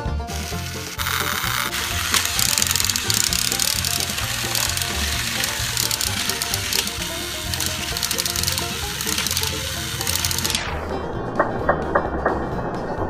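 Background music with a steady bass beat, over the buzzing whir of battery-powered TrackMaster toy train motors and gears as two engines push against each other on plastic track. Near the end the whirring drops away and a few sharp plastic clicks are heard.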